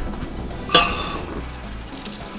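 Dry instant rice poured from a glass measuring cup into a stainless steel pot: a sudden clink about a second in, then a brief hiss of grains rattling against the metal.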